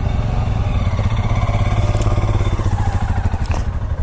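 Motorcycle engines running at low speed close by, one bike's note rising and then falling as it rolls past the microphone. A couple of short knocks come through during the pass.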